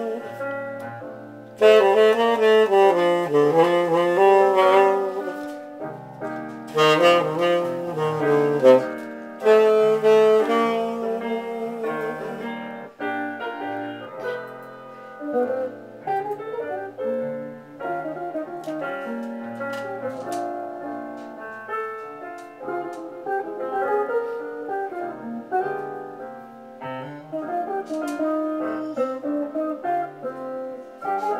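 Saxophone playing a slow jazz ballad melody over piano accompaniment, loudest in the first dozen seconds, after which the music continues at a lower level.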